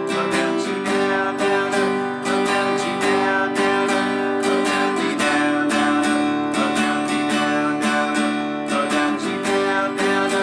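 Acoustic guitar strummed in a steady down, down-up, up, down-up pattern through the chorus chords C, G and D, the chord changing about halfway through.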